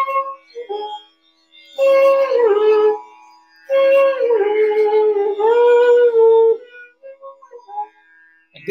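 Bansuri (bamboo transverse flute) playing phrases of Raga Kedar, its notes sliding smoothly from pitch to pitch in meend, in phrases separated by short pauses. A steady drone note sounds beneath the melody.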